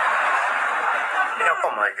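A man's long, loud yell of pain as he passes a kidney stone, heard through a shared video-call stream with a sitcom laugh track under it. It stops about 1.4 seconds in.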